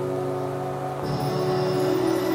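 Background music with sustained notes that change to a new chord about a second in.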